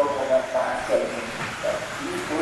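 17.5-turn brushless electric motors of 1/10 2wd RC buggies whining, the pitch rising and falling as the cars throttle and brake around the track, mixed with a reverberant voice in a large hall.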